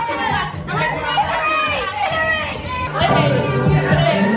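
Music with a singing voice, and people's voices chattering over it; the bass comes in strongly about three seconds in.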